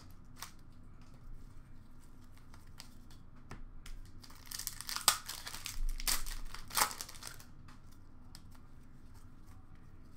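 Faint rustling and crinkling as a hockey card pack's wrapper is torn open by hand. Most of it falls in the middle, with a few sharp crackles.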